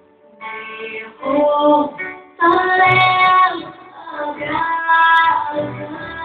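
A recorded song sung by a high voice over instrumental backing, coming in about half a second in and running in sung phrases with a short break just after two seconds.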